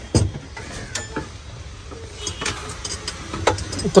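Low steady rumble of a vehicle engine running, heard inside the cabin, with a few light clicks and knocks.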